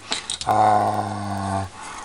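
A man's drawn-out hesitation sound, a steady low "uhh" held at one pitch for just over a second, between words.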